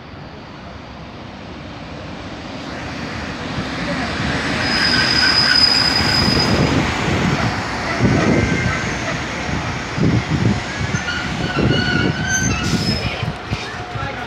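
Two coupled MÁV-Start Bzmot diesel railcars running into the platform. Their rumble grows louder as they approach, with a high squeal about five seconds in. The wheels then knock over rail joints several times as the cars pass close by.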